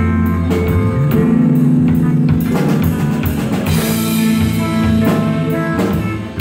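Live rock band playing instrumentally: distorted electric guitars holding chords over a drum kit, with a cymbal crash about two-thirds of the way through.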